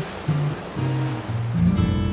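Classical guitar playing a slow line of low plucked notes over the steady wash of ocean waves on a beach.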